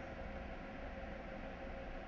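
Quiet room tone: a steady faint hiss with a low hum underneath, and no distinct sounds.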